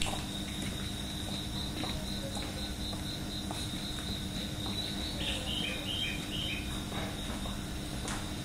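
Crickets chirping in a steady, pulsing high trill, with a short run of stepped, falling chirps about five seconds in, over a steady low hum.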